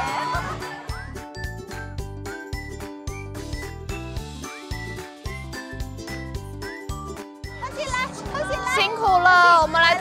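Light background music with bell-like, chiming notes over a steady beat. High, excited voices come in over it near the end.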